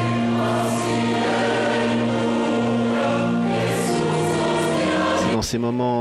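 Choir singing a slow hymn during Communion, in long held chords that change every second or so. A man's voice starts speaking over the singing near the end.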